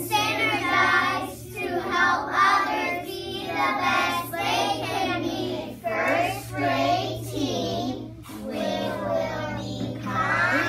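A group of young children chanting together in unison in a sing-song voice, with a short break about six seconds in before more children's voices. A steady low hum runs underneath.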